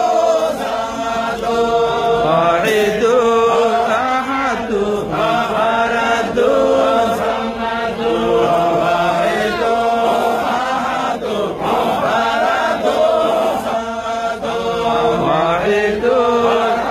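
Men chanting a Sufi devotional hymn in Arabic, a continuous melodic chant led over a microphone, the pitch rising and falling without a break.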